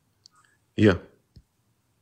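A man answers with a single short 'ja', with a few faint clicks before it and one short click after it.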